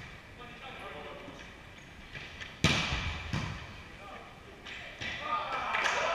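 Indoor volleyball play: a sharp smack of the ball being hit about two and a half seconds in, followed by a smaller one, ringing around the hall. Players' voices with a loud falling call near the end.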